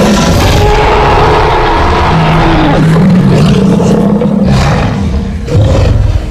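Film sound of a Spinosaurus roaring: one long, loud roar held for several seconds, mixed with orchestral score.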